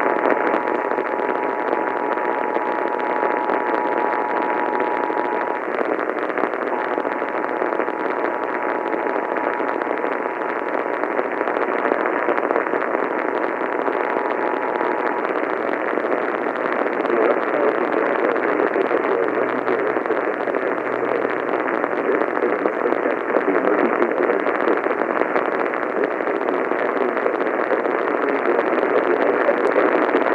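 AM radio static and hiss from a weak, distant station. Under it, for about the first fifteen seconds, is the faint two-tone Emergency Alert System attention signal, which drops out for a moment about five seconds in and then fades away into the static.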